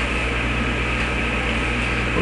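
Steady background hum with a hiss, no distinct event.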